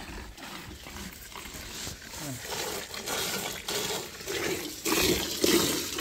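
Streams of milk squirting by hand from a cow's teats into a galvanized metal bucket that already holds frothy milk, in repeated hissing squirts that grow louder near the end.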